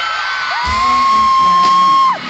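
A girl close to the microphone holding one long, high, shrill scream for about a second and a half, starting just past halfway into the first second, over a live pop-rock band playing in a concert crowd.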